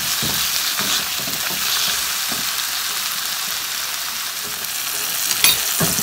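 Chopped onion and tomato sizzling in oil in a black wok, with a spatula stirring and pressing the mixture in repeated strokes to mash the salted tomatoes down into a masala. One sharp click near the end.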